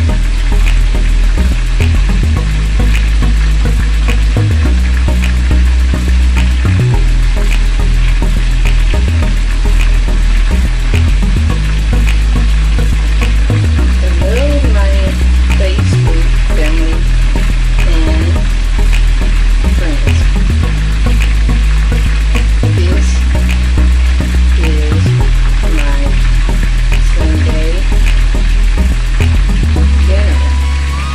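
Chicken frying in hot oil with a steady sizzle, under music with a heavy repeating bass line.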